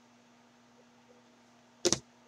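Quiet room tone with a faint steady hum, then one brief loud knock near the end: handling noise as a trading card is set down on the tabletop.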